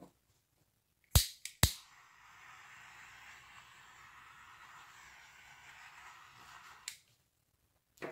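Small handheld butane torch: two sharp igniter clicks, then a steady flame hiss for about five seconds, ending with a click as it shuts off.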